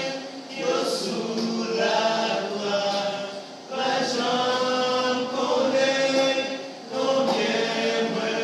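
A group of men singing a worship song unaccompanied, in Haitian Creole, in long phrases with brief breaks for breath about every three seconds.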